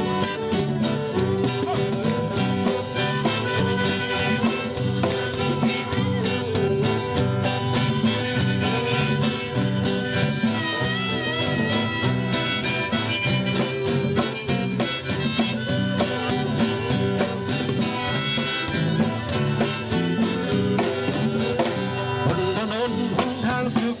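Live band playing an instrumental passage: a violin lead melody with vibrato over guitar, drum kit and congas keeping a steady beat.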